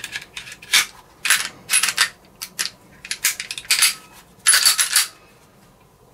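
Steel slide of a Springfield Hellcat pistol being fitted back onto its polymer frame: a string of short metallic clicks and scrapes. A longer, ringing metal-on-metal slide comes about four and a half seconds in.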